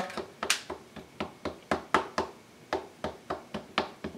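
A StazOn ink pad patted repeatedly onto a wood-mounted rubber stamp to ink it, a steady run of light taps about three or four a second.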